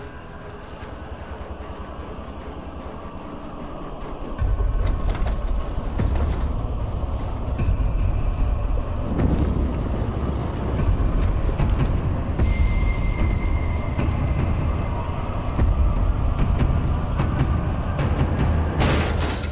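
A deep, loud, steady rumble comes in about four seconds in and carries on, film-soundtrack style, with a dense crackling over it like burning torches.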